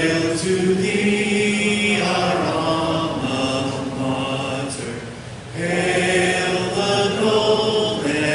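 A standing crowd singing their school song together in slow, long-held notes, with a short breath-break about five and a half seconds in.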